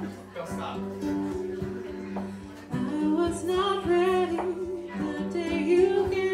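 Live acoustic band playing the intro of an indie-soul song: guitar, cello and keyboard over sustained low notes, with a wavering melody line entering about three seconds in.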